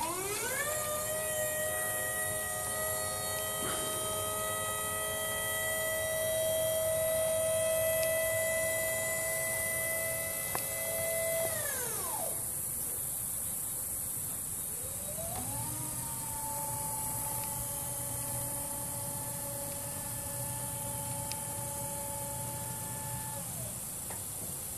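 Haulotte 5533A towable boom lift's 24-volt electric hydraulic power unit running as the boom is worked: the motor winds up to a steady whine of several tones, runs about eleven seconds and winds down, then after a pause of about three seconds winds up again, runs about eight seconds and winds down near the end.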